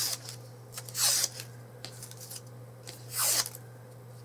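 A paper strip drawn hard along the edge of a letter opener to curl it: two short scraping strokes, about a second in and about three seconds in.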